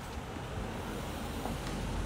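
A car passing in the street, a steady low rumble of engine and tyres that grows a little louder toward the end.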